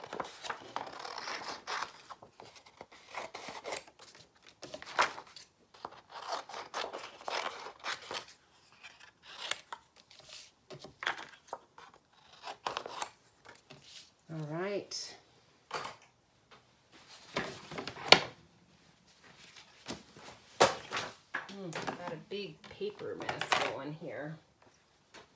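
Scissors cutting paper: a run of short, sharp snips with paper rustling between them as stamped images are cut out of a sheet.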